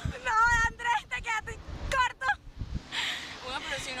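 Two riders' high-pitched squeals and shrieks in short bursts, with wind rumbling on the microphone as the ride capsule swings; ordinary talk starts near the end.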